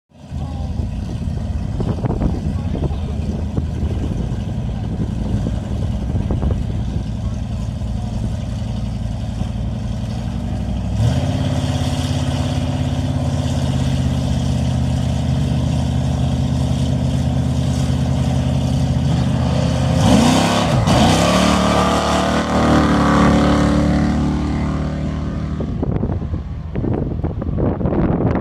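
Two V8 drag cars, one of them a 440 'cuda (Plymouth Barracuda with a 440 big-block V8), rumbling at the start line, then held at a higher steady rev from about 11 s in while staged. About 20 s in they launch, revving up in rising sweeps through the gears, then fade away down the strip near the end.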